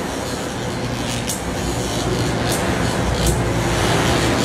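Sound-design electrical energy effect: a dense crackling hiss over a steady low hum and rumble, with sharp zaps about three times, swelling slightly toward the end.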